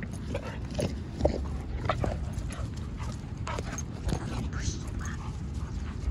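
Dog whining and yipping in short calls, over a low steady rumble.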